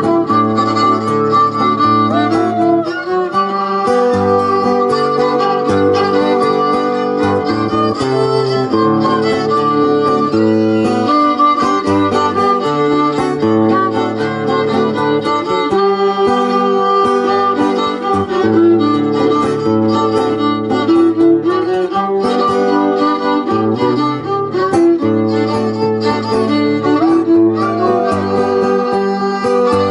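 Violin and guitar dance music, a fandango, playing continuously with a bass line stepping steadily between notes underneath.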